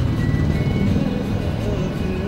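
Music playing on a car radio, over a steady low rumble from the car and the traffic.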